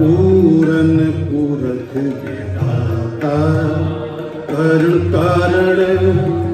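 Sikh kirtan: harmoniums played with tabla, and a man's voice singing a sustained, gliding devotional melody over the steady reed chords.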